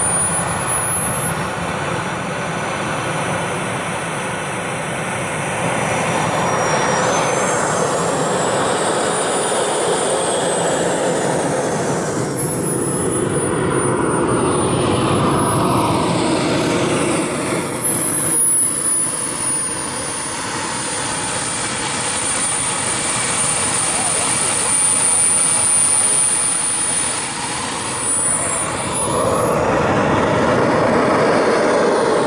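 Twin electric ducted fans of an E-flite A-10 Thunderbolt II RC jet in flight: a high whine that bends up and down in pitch as the model flies around, over a broad rushing noise.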